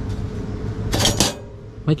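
Short metallic clinking and rattling of a Havahart wire cage trap about a second in, over a steady low hum.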